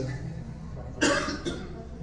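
A short cough about a second in, followed by a fainter second one, over a low steady hum.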